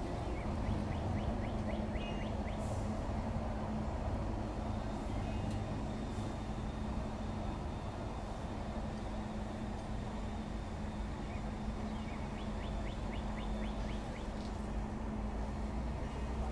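Propane-fuelled Toyota forklift engine running steadily with a low, even hum. Twice a brief run of faint rapid ticking comes in, about a second in and again about twelve seconds in.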